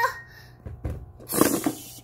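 Soft knocks of plastic toys being handled and pushed on a carpet, then a short hissing burst about one and a half seconds in.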